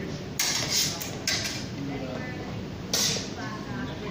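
Steel longswords clashing in sparring: sharp metallic strikes, a quick run of them near the start, another about a second and a quarter in, and one more about three seconds in.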